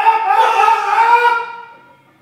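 A man's long, high-pitched strained yell during a heavy barbell squat, held for about a second and a half with the pitch creeping up slightly, then fading away.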